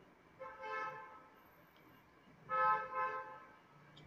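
A vehicle horn sounding two short, steady toots about two seconds apart, the second louder.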